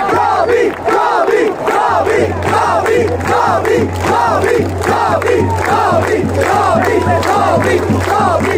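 Football stadium crowd of supporters chanting and shouting, many voices in short overlapping rising-and-falling shouts, over a steady low hum.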